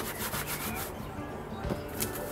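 Rustling and rubbing of pulled weeds and plant stems handled in gloved hands. It is densest in the first second, with a soft knock near the end.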